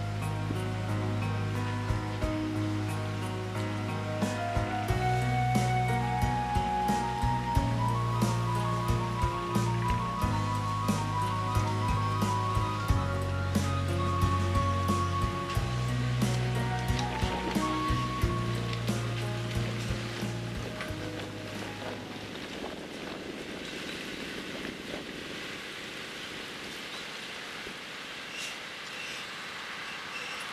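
Background music with a repeating bass line, cut off about two-thirds of the way through. It leaves the steady rushing sound of a Mitsubishi Fuso Aero Ace coach driving up and past, its engine's low end thinned by a low-cut filter against strong wind noise.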